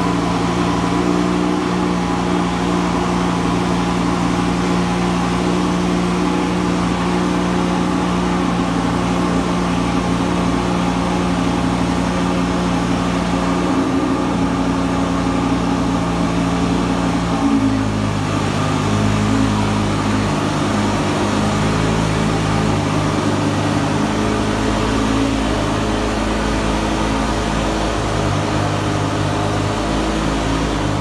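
Lamborghini Huracán's V10 idling steadily. A bit over halfway through, the idle drops to a lower pitch and runs slightly less evenly.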